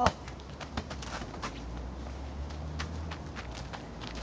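A sharp knock right at the start, then scattered light crunching footsteps on wood-chip mulch over a low rumble.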